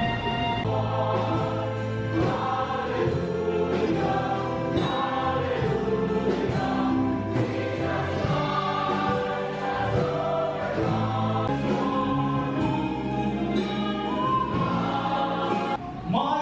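A mixed choir of men's and women's voices singing a sacred cantata. It opens on a held chord, moves into a flowing passage of changing notes, and breaks off briefly near the end.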